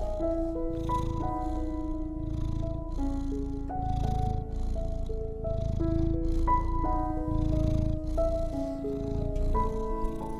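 A soft, slow melody of long held notes, with a cat's purr layered underneath that swells and fades in a steady rhythm with each breath, about once or twice a second.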